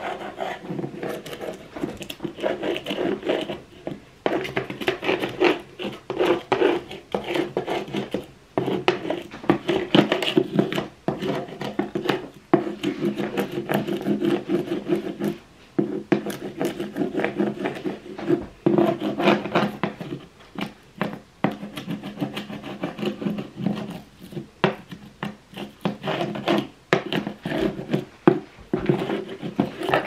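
Stiff dish brush scrubbing over an old painted wooden window frame in quick, irregular rasping strokes with short pauses, knocking off loose, flaking paint chips.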